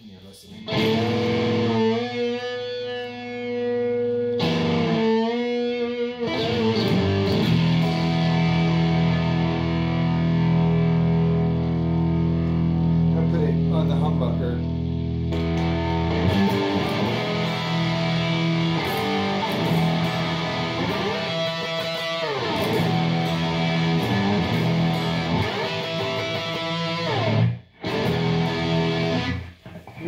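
Electric guitar played through a drive pedal and amp: sustained, overdriven single notes and chords with slides between them. It breaks off briefly near the end.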